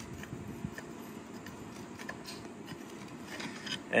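Faint scraping and a few light clicks of a steel pry bar working against the aluminum plug in a cast-iron cylinder head's exhaust crossover port, trying to break off excess aluminum.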